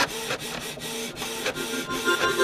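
Printer sound effect: a carriage motor running along its rail with a steady hum and quick even clicks, about five a second.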